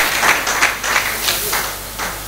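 Audience applauding, thinning out near the end.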